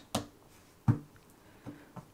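A deck of playing cards being cut by hand: two short sharp snaps of the cards, nearly a second apart, and a fainter one near the end.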